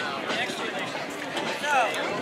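Indistinct chatter of several people talking, with one voice louder near the end.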